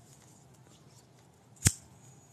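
Quiet room tone broken by one short, sharp click near the end.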